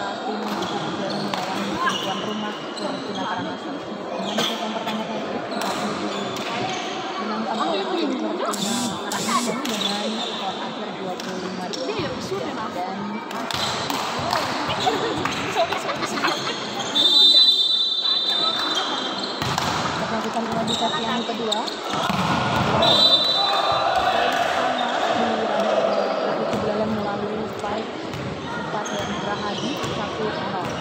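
Volleyballs thumping and bouncing on a sports-hall court, with voices and chatter echoing in the large hall. A short high tone sounds twice past the middle.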